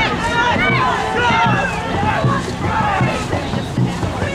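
Dragon boat race in full effort: raised voices of crews and spectators shouting and cheering over a steady drumbeat, about two beats a second.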